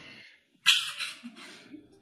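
A woman sneezing once: a sudden loud hissy burst after a brief catch of breath.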